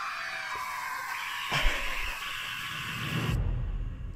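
Film-trailer sound effect, loud and harsh like a hiss or scream, with a sharp hit about a second and a half in. It cuts off suddenly near the end into a low rumble.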